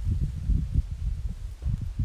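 Wind buffeting the microphone: an uneven low rumble that comes and goes in gusts.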